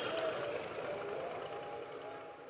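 Steady background hiss of outdoor ambience with a few soft sustained music tones, the drama's background score coming in quietly.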